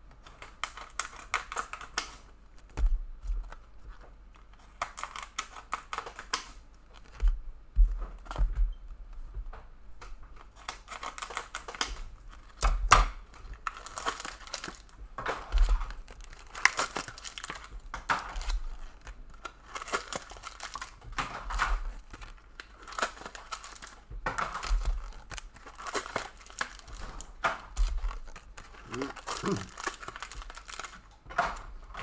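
Trading-card pack wrappers being torn open and crinkled, with cards handled, in irregular bursts of rustling and tearing throughout.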